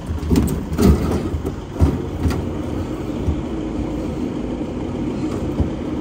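A motor vehicle's engine running at idle, a steady low hum, with a few sharp knocks in the first couple of seconds.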